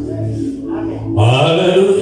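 A man's voice intoning long, drawn-out chanted notes into a microphone, the low note held for about a second and then sliding upward. Steady sustained background music runs underneath.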